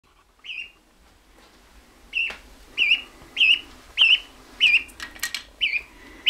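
Canada goose gosling peeping: short, high, clear calls that rise and fall in pitch. One comes near the start, then a steady run of about seven, roughly one every half second.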